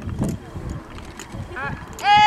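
Wind rumbling on the microphone, with a few faint knocks and a short high pitched call near the end.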